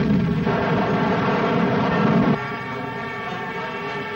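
Drone of piston-engine warplanes, a steady hum of many tones that drops somewhat in level a little past halfway.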